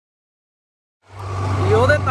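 Total silence, then about a second in a steady low drone of a moving vehicle cuts in, with a man's voice starting over it.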